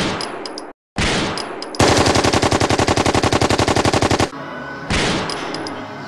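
Gunfire: three single loud shots, each with a fading ring, then a rapid machine-gun burst lasting about two and a half seconds, and one more shot near the end.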